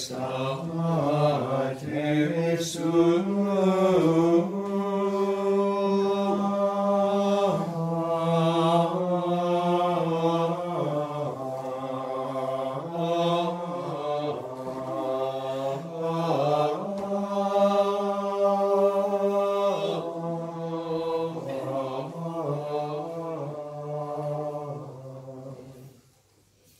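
Latin plainchant of a sung Tridentine Mass, sung by men's voices in long, held notes that move step by step, fading out right at the end.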